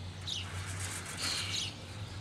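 Faint chirps of a small bird: a few short, quick calls that slide downward in pitch, over a low steady hum.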